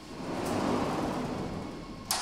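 Heavy sliding door of a machine cabinet rolling along its track: a rumbling noise that swells and fades over about a second and a half.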